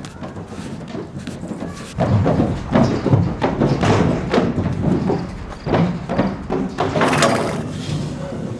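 Horses' hooves thudding and knocking on the floor of a metal livestock trailer as the horses step off it: a run of irregular heavy thumps starting about two seconds in.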